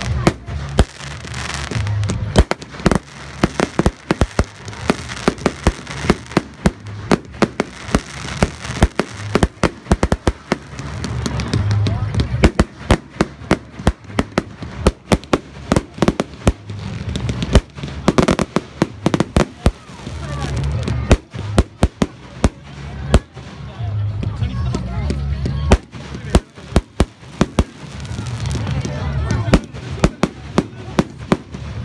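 Aerial fireworks bursting continually: many sharp bangs and crackles a second, coming irregularly, over a low rumble.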